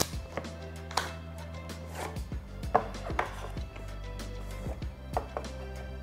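A cardboard earbud box being opened by hand, its outer sleeve slid off: scattered light taps and clicks of the packaging being handled, over quiet background music.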